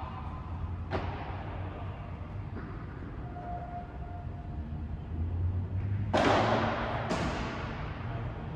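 Padel ball hits echoing in a large domed hall: a sharp knock about a second in, then two louder hits about a second apart near the end. A steady low hum runs underneath.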